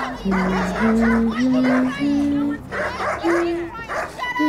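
Music: a melody of held notes, each about half a second long, stepping up and down in pitch, with other curving, chirping sounds layered above it.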